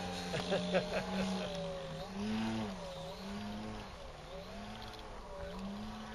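Engine of a radio-controlled Pitts Model 12 biplane running in flight, its note rising and falling about once a second as the model manoeuvres.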